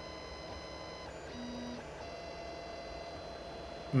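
Creality Ender 2 3D printer printing, its stepper motors whining in several steady tones that shift in pitch about a second in and again near the middle as the print head changes moves.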